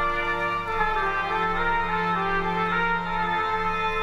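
Church organ playing sustained chords over a held bass note, the upper notes moving slowly, accompanying a sung anthem.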